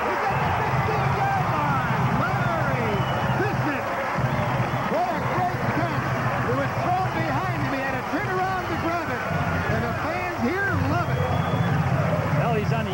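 Stadium crowd cheering and shouting, many voices yelling at once as a long pass is completed, with a steady low hum underneath.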